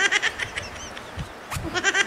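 A person laughing in short, quick breathy bursts, twice, with a quieter pause in between.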